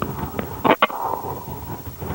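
Two sharp pistol shots in quick succession, with a fainter crack just before, heard from inside a moving vehicle over its road and engine noise.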